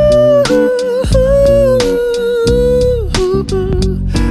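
Live pop band playing, with guitar and bass under a long held, wordless melody note that slides down in pitch about three seconds in.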